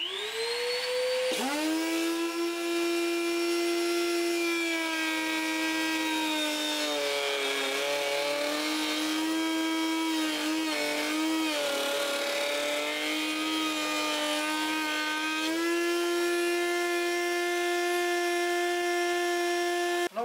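A table-mounted router spins up and runs at a steady high whine. From about four seconds in, its pitch sags and wavers under load as a wooden board is fed through the finger-joint (zigzag) glue-joint bit. The pitch comes back up near the end, once the cut is finished and the router is running free again.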